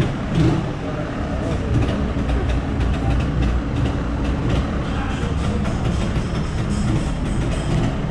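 Yamaha DT200's single-cylinder two-stroke engine idling steadily.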